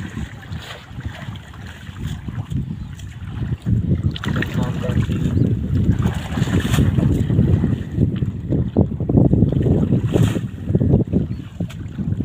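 Water sloshing and splashing as several people wade through shallow water, dragging a fishing net, with wind rumbling heavily on the microphone.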